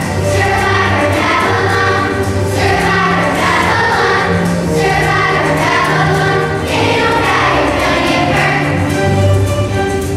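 Children's choir singing together over instrumental accompaniment with a sustained bass line, steady and loud throughout.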